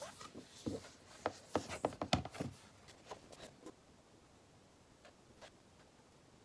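A glossy paper pamphlet being handled and opened, its stiff pages turned and rubbing: a quick run of crisp rustles and taps in the first couple of seconds, then a few lighter ones.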